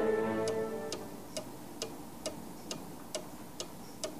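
String music fades out over the first second. Then come steady, even ticks like a clock ticking, about two a second.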